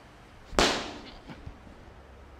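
A single loud, sharp crack from a martial artist's strike as he performs a kung fu form, with a short ringing tail in the room. Two faint knocks follow about a second later.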